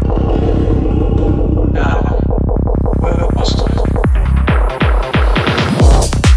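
Psytrance build-up: a fast pulsing synth bass, about ten pulses a second, with a rising noise sweep above it. From about four seconds in, a run of falling-pitch sweeps quickens toward the drop into the full beat.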